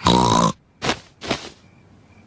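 Cartoon pig snoring: one loud snore in the first half second, then two shorter, softer ones.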